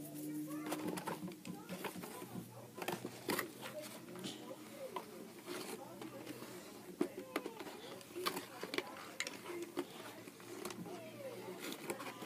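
Scattered small clicks and rustles of toy-car packaging being handled as the strings holding the cars are taken out, with a faint voice in the background.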